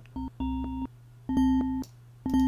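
Logic Pro X Ultrabeat drum-synth voice in its physical-modelling mode, triggered as a brief blip and then twice more as short electronic tones of about half a second each, at the same pitch. A steady low hum runs underneath.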